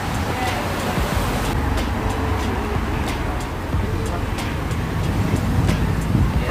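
Steady low rumble of street traffic mixed with indistinct voices, with scattered light clicks.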